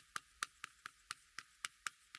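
Chalk tapping on a chalkboard while writing: faint, short clicks at irregular spacing, about four a second, as each stroke of the characters goes down.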